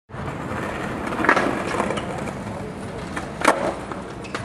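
Skateboard wheels rolling over paving tiles, with two sharp clacks of the board, one about a second in and a louder one near the end.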